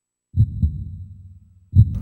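Two deep, low thumps in the soundtrack, about a second and a half apart, the first dying away slowly before the second strikes.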